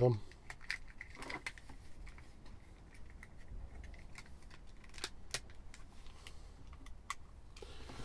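Plastic casing of a handheld PMR walkie-talkie being pressed and clicked back together by hand: scattered quiet clicks and taps of plastic parts seating, with handling noise.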